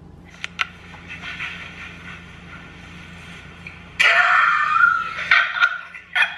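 Tinny audio of a dance video played back through a phone's small speaker, with little bass. It is faint for about four seconds, with two light clicks early on, then turns much louder and harsher for the last two seconds.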